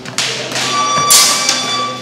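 Practice swords striking in sparring: a few sharp clacks and thuds, the loudest a little after a second in. A steady high-pitched tone sounds through the second half.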